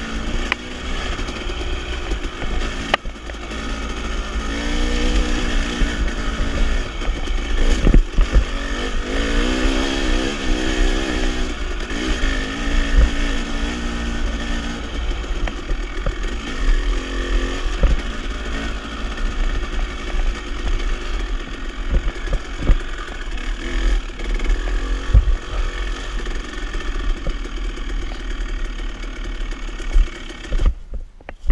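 Dirt bike engine running at low trail speed, its pitch rising and falling as the throttle is worked over a rough forest trail. Low rumble throughout and a few sharp knocks from the bike going over rocks and roots.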